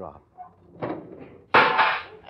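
Radio sound effect of a wooden card-catalogue drawer being pulled out: a short sliding scrape, then a sudden loud crash about one and a half seconds in as the drawer comes out too far.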